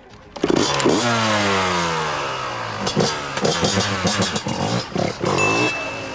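Yamaha YZ125 two-stroke dirt bike engine revving as the rider pulls away without stalling, its pitch falling steadily over several seconds. Laughter about three seconds in.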